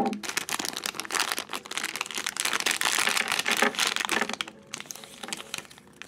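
Plastic-foil blind bag crinkling and rustling as it is torn open and handled, its contents pulled out; dense crackling for about four and a half seconds, then softer rustling near the end.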